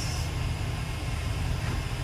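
Steady low rumble and hiss of a moving cable car gondola, heard from inside the cabin.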